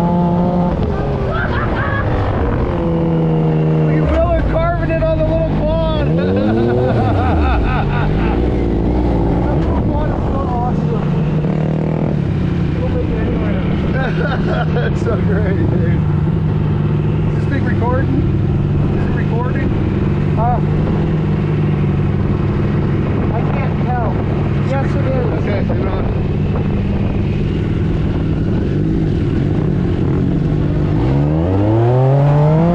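Side-by-side UTV engine heard from the open cockpit, its pitch climbing and dropping repeatedly as it is driven over sand dunes, with wind and tyre noise throughout.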